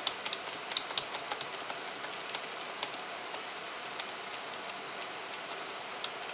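Faint, irregular light clicks over a steady background hiss. The clicks come several a second at first and thin out after about three seconds.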